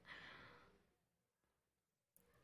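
Near silence, opening with a faint exhaled breath from the narrator that fades out within the first second.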